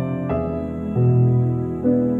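Slow, gentle instrumental background music with held chords that change a few times.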